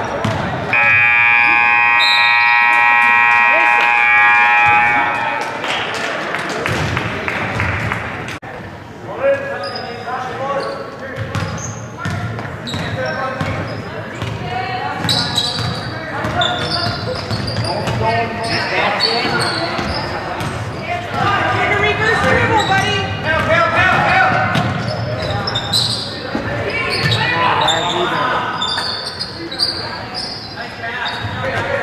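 Gym scoreboard horn sounding one steady, loud blast of about four seconds near the start. It then gives way to basketball bouncing on the wooden court, with voices echoing in the gym.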